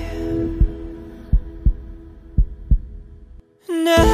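A heartbeat sound effect: deep low thumps, mostly in lub-dub pairs, under a held music note that fades away. Near the end the music cuts back in.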